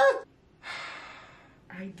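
A woman's high, excited squeal cuts off just after the start, followed about half a second in by a long breathy gasp that fades away over about a second.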